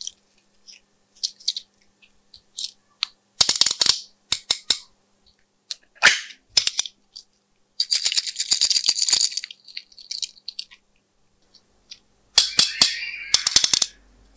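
Small plastic slime charms clicking and rattling as they are handled and set down on the slime: scattered sharp taps, a quick run of clicks about three and a half seconds in, and longer rattling stretches about eight seconds in and again near the end.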